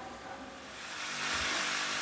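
Water spraying from a garden hose's spray nozzle onto soil: a steady hiss that comes in about a second in, after a quieter start.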